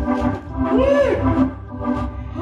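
Organ holding sustained chords with drum hits, and about a second in a voice sliding up and back down in pitch over the music.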